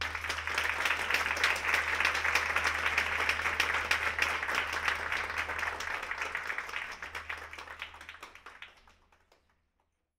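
Audience applauding. It starts suddenly, holds steady, then thins out and dies away near the end.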